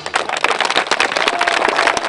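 Audience applauding: many hands clapping in a dense, even stream that starts as soon as the song ends.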